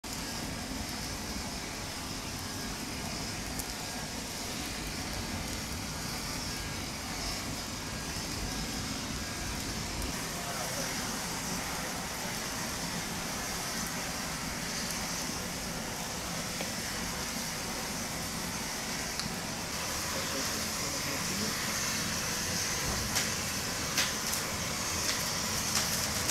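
A motorcycle burning: the flames give a steady rushing that grows a little louder over the last few seconds, with sharp crackles and pops near the end.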